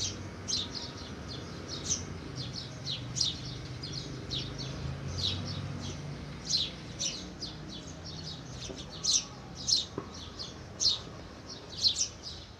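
Small birds chirping: quick, high chirps repeated over and over, over a low steady hum.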